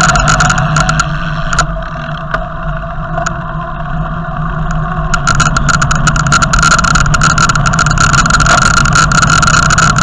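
Steady road and wind noise picked up by a bicycle-mounted camera while riding, with a steady hum and a dense scatter of rattling clicks from the mount. A car passes close near the start, the noise eases off for a few seconds and then builds again as the bike picks up speed.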